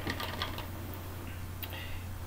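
A few faint, light clicks, a cluster early on and another near the end, over a steady low electrical hum.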